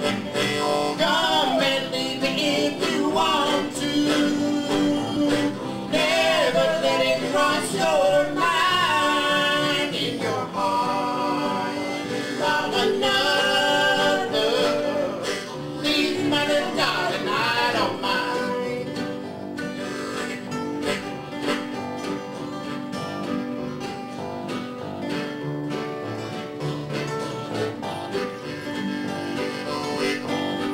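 Live acoustic Americana band playing an instrumental break: a harmonica lead with bent, wavering notes over strummed acoustic guitars, mandolin and electric bass. About eighteen seconds in the harmonica drops away and a picked string solo takes over the lead.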